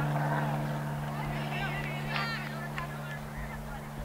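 A steady low hum under scattered distant shouting voices of players and spectators, the clearest shouts about two seconds in.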